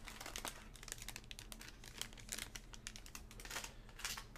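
Foil wrappers of trading card packs crinkling as they are handled: faint, irregular crackles.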